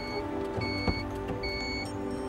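A Daewoo Matiz's warning chime beeps evenly, three short pitched beeps a little over one a second, while a car door stands open. Background music plays along with it, and there is a single knock about a second in.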